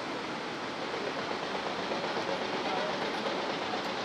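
Steady rushing of a fast whitewater river in a gorge, an even roar without a break.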